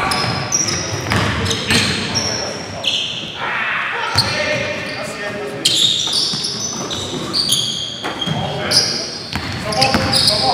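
Basketball being played on a hardwood gym floor: sneakers squeak again and again, the ball bounces, and players' voices call out indistinctly, all echoing in the large gym.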